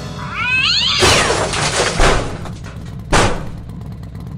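A short cat-like meow in the first second, its pitch gliding up and then down. It is followed by a noisy rush with two thuds, about two and three seconds in.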